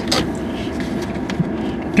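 Steady low hum and hiss inside a car cabin with the engine running, with a few faint clicks.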